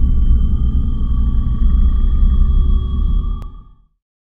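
Logo sound design: a deep, loud rumble with thin, steady high tones held above it, fading out near the end with a faint click just before it dies away.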